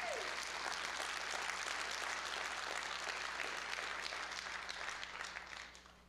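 Congregation applauding, a dense patter of clapping that fades away near the end.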